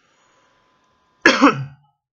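A man's single short cough about a second in, starting suddenly.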